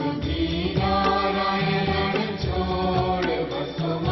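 Hindu devotional music: chanted vocals held on long notes over instrumental accompaniment with a repeating low beat.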